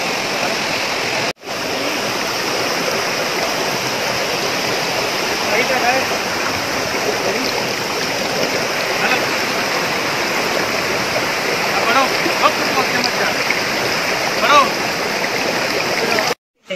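Waterfall: steady noise of falling water, cut off for a moment about a second and a half in, with faint voices over it.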